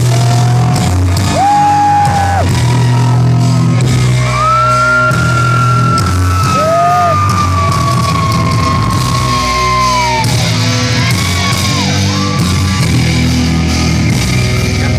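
Live psychobilly band playing loud in a hall: a coffin-shaped upright bass plays low stepping notes under the band, with a long high held note that slowly falls over the middle of the stretch.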